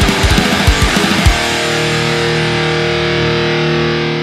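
Distorted electric guitar through a two-channel Mesa/Boogie Dual Rectifier with EL34 tubes, recorded direct with speaker-cab impulse responses. It plays a fast, chugging heavy metal riff over drums, about six hits a second, then about a second and a half in it holds a chord that rings out and fades near the end.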